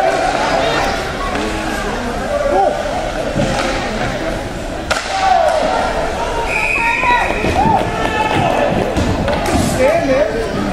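Ice hockey rink sound: spectators' voices and shouts over sharp knocks and thuds of sticks and puck against the ice and boards, in a large echoing arena.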